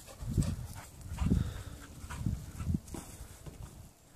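Pit bull giving several short, low grunts and huffs as it plays.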